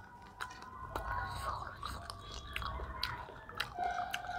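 People chewing as they eat chicken curry and rice by hand, with a few small clicks scattered through.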